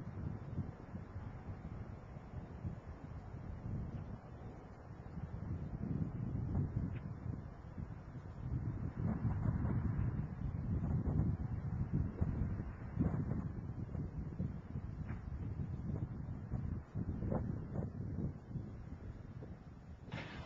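Space Shuttle Discovery's solid rocket boosters and main engines heard from far off during ascent: a low, uneven rumble that swells and fades, with a few faint crackles.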